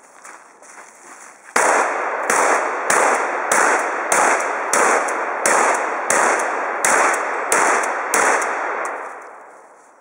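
Manual-action shotgun fired in a rapid string: eleven sharp shots, about one and a half a second, each followed by a short echo among the trees. The shooting begins about a second and a half in and the sound fades out near the end.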